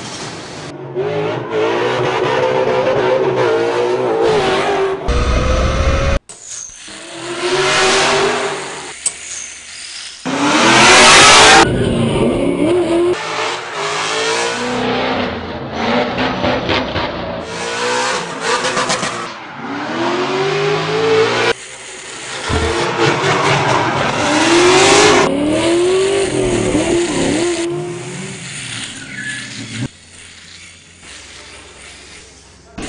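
Ford Mustang drift car's engine revving up and down with tyre squeal and burnout noise, in several passes with abrupt cuts between them. The loudest stretch is a burst of tyre noise about a third of the way in.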